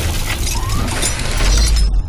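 Sound effects of an animated logo reveal: a dense, glassy noise rush over deep bass that swells toward the end.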